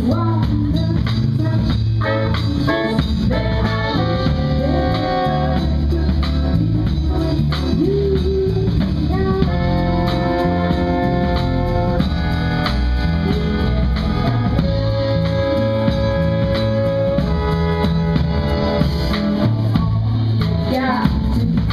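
A live band playing: a trumpet and saxophones play melody lines over a drum kit and bass, with long held notes around the middle of the passage.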